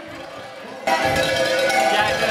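Cowbells played on stage as music, a tune of ringing, held notes that comes in loudly about a second in after a brief quieter stretch.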